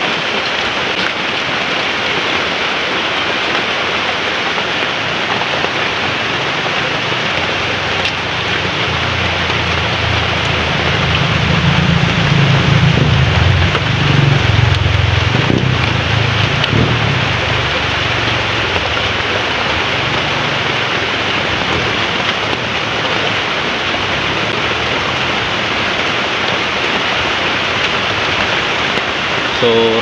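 Steady rain falling on hard surfaces, with a low rumble that swells and fades about a third to halfway through.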